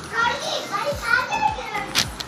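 Speech only: a young child talking.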